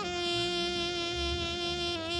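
A wind instrument holds one long, buzzing note in a free-jazz ensemble. The note dips in pitch at the start, then stays steady.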